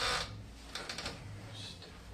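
Biting into a slice of crusty pizza and chewing: a short crunch right at the start, then a few faint clicks of chewing about a second in.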